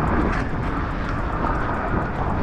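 A steady rushing noise with no clear pitch or rhythm.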